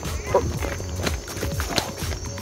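Footsteps on a dirt forest trail, hurried and uneven, with the rustle of the camera being carried along.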